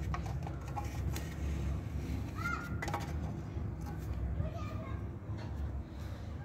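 Steady low background rumble with faint children's voices in the distance and a few light clicks of plastic toy furniture being handled and set down.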